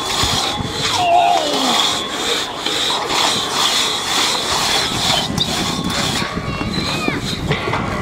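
Two-man crosscut saw being pulled back and forth through a timber, a rasping stroke about every half second. A few voices call out from onlookers.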